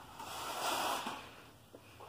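A man's breath, drawn or blown through the nose, lasting about a second and then fading.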